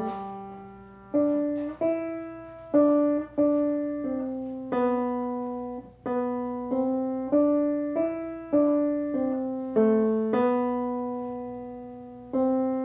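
Grand piano played solo: a slow melody, mostly one note at a time, each note struck and then fading before the next.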